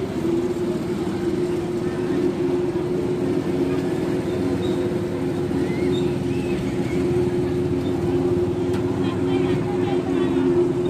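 A motor engine running steadily at one constant pitch, a low even hum, over a faint hiss.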